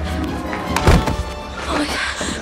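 Movie soundtrack: a tense music score with a low rumble, and one heavy thud about a second in.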